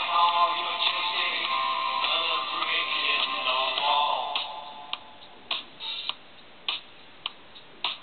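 Beagle howling: one long, pitched howl that slides down at its end about four seconds in, followed by several short sharp sounds.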